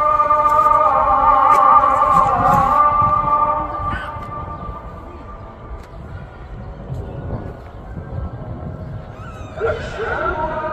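A chanting voice holding long, wavering notes with melismatic turns, fading out about three and a half seconds in and coming back near the end.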